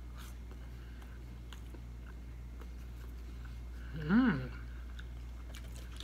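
A person chewing a mouthful of air-fried cauliflower bite, crispy outside and soft inside: faint, wet mouth sounds over a steady low hum. About four seconds in there is one short hummed 'mm'.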